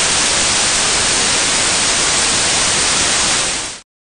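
Loud, steady white-noise static hiss that cuts off sharply near the end.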